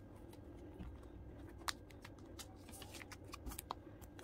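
Photocards being handled and slid into clear plastic binder sleeves: faint, scattered ticks and crinkles of plastic, with a sharper tick about one and a half seconds in and another near the end.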